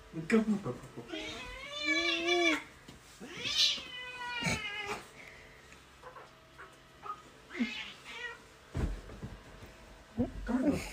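Domestic cat meowing: two long, drawn-out meows about two and four seconds in, the second rising and then falling, and a shorter, fainter meow near the end. A short laugh comes right at the start.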